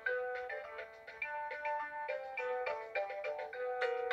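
VTech alphabet apple learning toy playing a tune in short electronic beeping notes, several notes a second, as its letter keys light up in turn.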